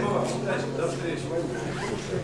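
Acoustic guitar strings left ringing after being struck, a low chord sustaining and dying away near the end, under the indistinct chatter of several people talking.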